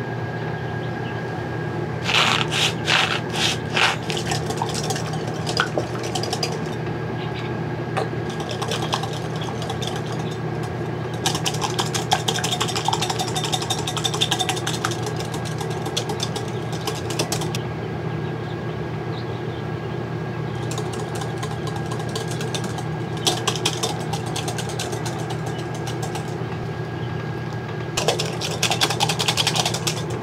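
Wire whisk beating egg yolks and oil in a glass bowl to make mayonnaise, heard as several bursts of rapid clinking against the glass. A steady low hum sits underneath throughout.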